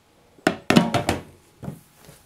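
Solid-surface sink cover set down over a stainless steel sink. The slab knocks against the sink rim and the countertop in a quick run of knocks about half a second in, with a lighter knock near the end.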